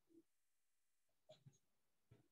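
Near silence, with a few faint, short taps from a drawing compass being worked on a paper notebook: one at the start and two close together past the middle.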